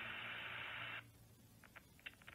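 Spirit Talker app's TV spirit box playing a steady static hiss through a phone speaker, cutting off suddenly about halfway through. A few faint clicks follow.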